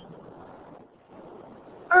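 Faint steady hiss of an open webinar microphone between words, cutting out briefly about halfway through, before a woman's voice starts at the very end.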